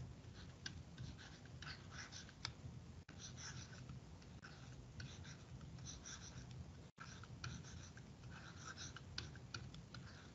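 Faint scratching of a stylus writing on a tablet surface, in short irregular strokes as words are handwritten, over a steady low hum.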